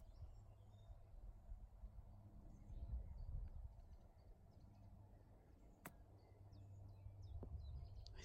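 A single short click about six seconds in: a golf club chipping the ball, over a near-quiet background of low rumble and faint bird chirps.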